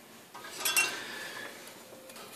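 A soldering iron is pulled out of its coiled metal stand, giving a brief metallic clink and rattle with a short ring about half a second in.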